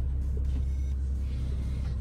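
Steady low rumble of a road vehicle's engine and tyres, heard from inside the cabin while driving.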